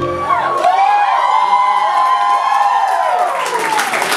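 A live audience cheering and whooping as the backing track stops, with many voices calling out at once. Applause builds near the end.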